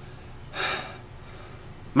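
A single heavy, out-of-breath gasp about half a second in, the breath of someone exhausted.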